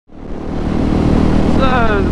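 Husqvarna 701 motorcycle's single-cylinder engine running steadily on the move, fading in from silence at the start.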